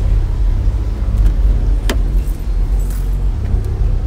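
A steady low rumble, with a single sharp click about two seconds in as a car's driver door is unlatched and opened, and faint light rattling.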